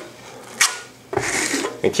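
Steel trowel scraping plaster across a wall: a short click about half a second in, then one half-second scraping stroke just after a second in.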